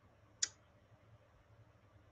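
A single short, sharp click about half a second in, otherwise near silence with faint room noise.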